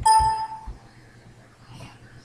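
A click, then a single bright ding that rings for about half a second and fades.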